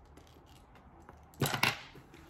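Metal strap clasp of a crossbody purse being unclipped from the bag: a couple of sharp metallic clicks close together near the end.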